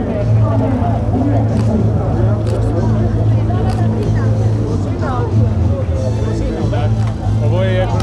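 Crowd chatter, many voices talking at once with no clear words, over a steady low mechanical hum.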